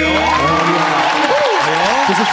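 Backing music cuts off at the start, then a studio audience applauds and cheers, with voices calling out over the clapping.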